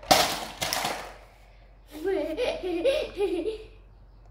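A young girl laughing in a run of short, rising-and-falling giggles for about two seconds. Before the laughter, in the first second, there is a loud, brief rush of noise.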